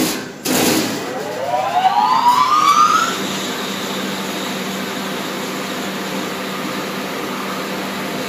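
Weiler industrial grinder's electric motor and V-belt drive starting up: a click, then a rising whine as the motor and large pulley come up to speed over about two and a half seconds, settling into a steady running hum.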